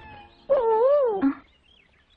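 A single loud, wavering meow about half a second in, its pitch rising and falling twice over most of a second and ending in a short lower note.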